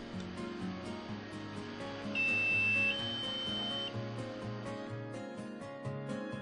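Background music, with an electronic beep about two seconds in: a lower tone for just under a second that steps up to a slightly higher tone for about a second. It is the LintAlert dryer-exhaust monitor sounding as it powers back up after being power-cycled.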